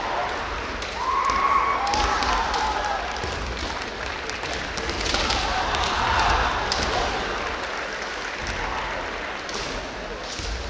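Kendo fighters' long kiai shouts, one about a second in and another around five seconds, over the sharp clacks of bamboo shinai and stamping feet on a wooden floor.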